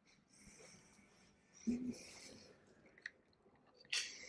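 Quiet handling of a video camera as it is picked up: a short breathy sound about halfway through, then a couple of small clicks near the end.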